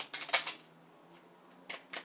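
A small tarot deck being shuffled by hand: a quick run of crisp card snaps and clicks in the first half second, a pause, then a few more clicks near the end.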